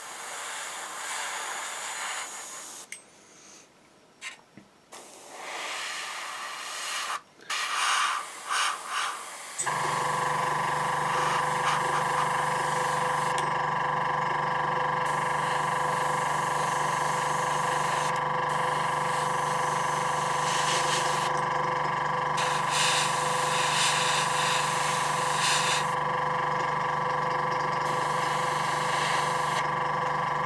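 Airbrush spraying paint in short hissing bursts with pauses. About ten seconds in, the airbrush compressor's motor cuts in suddenly and runs with a steady hum.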